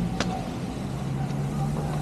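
Steady low hum of a motor vehicle's engine running amid road traffic, with a single sharp click a quarter second in.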